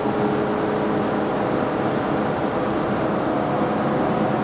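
2017 Chrysler Pacifica's 3.6-litre V6 growling steadily inside the cabin under hard acceleration, over road noise. The adaptive cruise control has dropped down two gears to hurry back up to its set highway speed.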